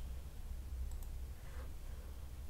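A few faint computer-mouse clicks, one at the start and a quick pair about a second in, as menu items are selected, over a steady low hum.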